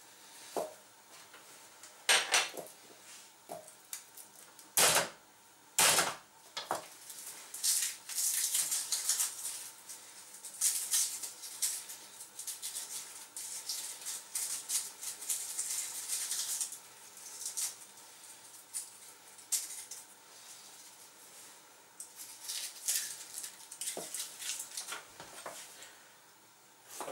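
Kitchen handling noises: plates, cutlery and utensils being moved and set down, with a few sharp knocks about five and six seconds in and a long stretch of quick, dense clattering in the middle.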